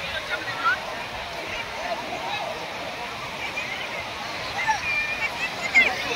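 Surf breaking on a sandy beach under the voices of a crowd of bathers: scattered shouts and calls over a steady wash of waves, with a louder high shout near the end.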